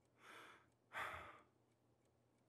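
A man breathing out heavily twice, a soft breath and then a louder sigh about a second later.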